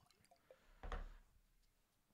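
Last few drips of rum from a bottle into a tasting glass just after the pour stops, faint ticks, then one short dull knock about a second in.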